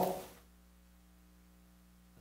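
Near silence: the end of a man's spoken word fades out, then only a faint, steady electrical hum remains under the room tone.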